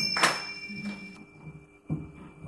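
The singing and drumming stop and a struck metal percussion instrument rings on with a clear high tone, fading away within about a second. A lull follows, with a soft thump near the end.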